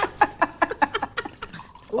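Wine being gurgled in the mouth, air drawn through it in quick, irregular wet bubbling to aerate it for tasting.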